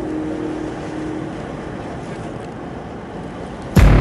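Steady rushing road and wind noise from a 4x4 driving along a road, slowly fading, as a held music note dies away in the first second; music cuts back in sharply near the end.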